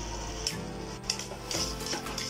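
Steady background music, with a metal slotted ladle scraping and stirring food in an aluminium pot in a few short strokes.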